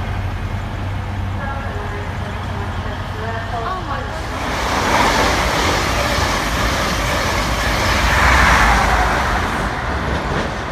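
A train passing at speed on the line: a broad rushing noise that swells about four seconds in, peaks twice and begins to fade near the end. Before it, a low steady hum.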